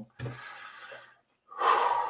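A man breathing audibly close to the microphone: a long fading exhale, then a sharp, louder in-breath near the end.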